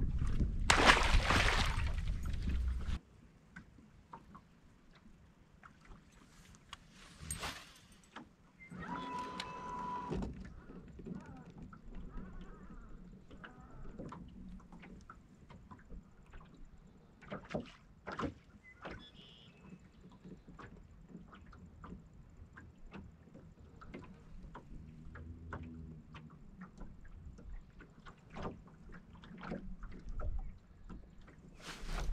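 Handling sounds aboard a small fishing boat: scattered light clicks and knocks from gear and the deck. A loud rush of noise in the first few seconds cuts off suddenly, and a short burst with a steady hum comes near the ten-second mark.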